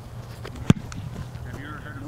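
A single sharp thump of a foot kicking a football in a punt, about two-thirds of a second in, over a steady low outdoor hum.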